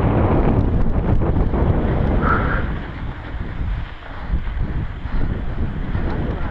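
Wind buffeting a GoPro's microphone while a mountain bike rolls fast along a dirt singletrack, with tyre and trail rumble underneath. The noise eases a little past the middle, and a brief high squeak sounds about two seconds in.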